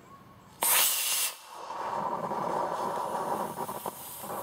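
A model rocket motor ignites on a hand-held launcher with a sudden loud whoosh about half a second in. It then keeps burning with a steady hiss and crackle instead of flying off, because the rocket is stuck on the launcher.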